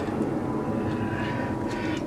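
Steady rushing noise of a distant engine, with a faint steady high whine.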